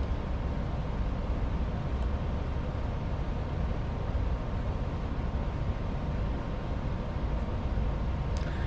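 Steady low rumbling background noise with no voice, even and unchanging throughout.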